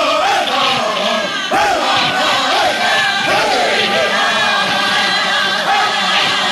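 A powwow drum group singing together in high, strained voices while beating a large shared hand drum with long sticks in a steady beat.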